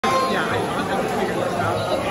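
Voices of people talking over one another in a large hall, with a brief steady tone near the start.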